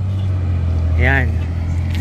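Steady low engine hum of road traffic, with one brief rising-and-falling vocal sound about a second in.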